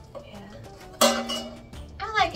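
Air fryer basket parts clinking together: a sudden sharp clink about a second in, ringing briefly as it fades, after quieter handling noises.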